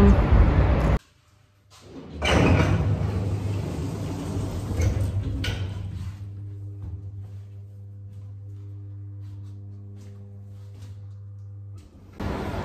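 A lift's sliding doors, then a steady low electrical hum as the lift car runs, heard inside the metal-walled car.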